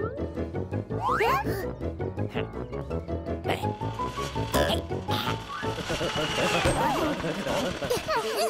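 Cartoon soundtrack: busy, bouncy background music with squeaky, wordless voice-like sounds and a few sharp sound-effect clicks.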